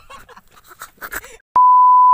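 TV colour-bars test tone: one loud, steady, single-pitched electronic beep that starts suddenly about one and a half seconds in, after a stretch of faint scattered noises.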